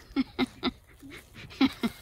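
A person laughing in short bursts: three quick laughs, a brief pause, then two more near the end.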